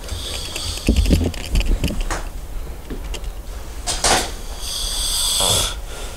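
A man asleep in bed snoring, with two loud, hissing breaths about four and five seconds in. Soft bumps and rustling are heard over the first two seconds.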